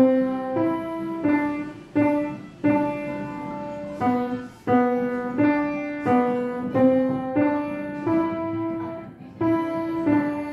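Grand piano played by a child: a simple, even melody of struck notes about 0.7 seconds apart, each ringing on until the next, with a short break in the phrase near the end.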